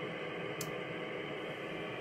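Steady radio receiver hiss from an Icom IC-7300 on upper sideband, cut off above about 3 kHz by its sideband filter. A faint tick comes about half a second in.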